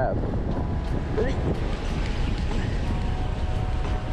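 Wind buffeting the microphone in a loud, uneven rumble, over surf washing on the rocks below.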